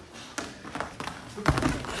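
Wrestlers' feet and bodies on a foam wrestling mat during a takedown: a few light taps of footwork, then a heavy thud about one and a half seconds in as they hit the mat.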